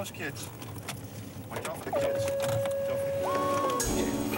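Faint voices, then a steady held tone from about halfway in, joined by a higher tone shortly after, and a sudden low thump just before the end.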